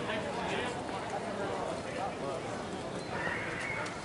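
Distant voices calling out across an open ball field, with a brief rush of noise near the end.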